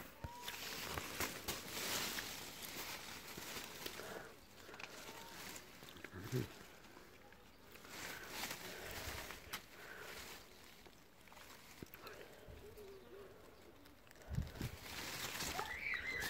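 Blackberry bramble leaves rustling and crackling with small clicks as a hand reaches in among the canes to pick berries. There is a short low murmur from a person about six seconds in and again near the end.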